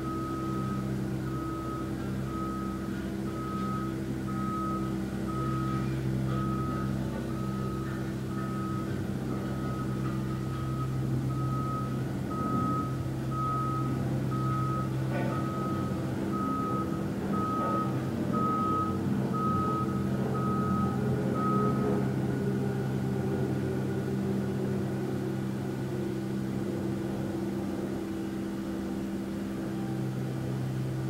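A vehicle's reversing alarm beeping at a steady, regular pace, stopping about three-quarters of the way through, over a steady low hum.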